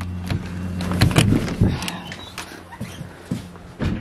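A cabin door being opened and walked through: a few sharp clicks and knocks from the lever handle and latch, with footsteps, over a steady low hum.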